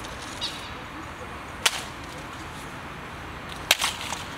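Sharp clicks or snaps over a steady outdoor background hiss: one about a second and a half in, then a quick cluster of two or three near the end.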